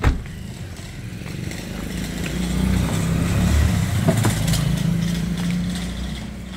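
A low vehicle engine rumble, swelling louder through the middle and easing off toward the end, with a sharp click right at the start.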